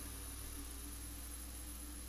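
Simulated twin-turboprop engines of a Beechcraft King Air in climb: a faint, steady low drone with a thin high-pitched turbine whine.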